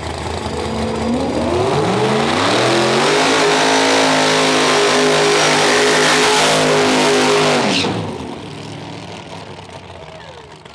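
Small-tire drag car, a first-generation Chevrolet Camaro, doing a burnout. The engine revs up over about two seconds, holds at high revs with the rear tires spinning for about four seconds, then drops off sharply about eight seconds in.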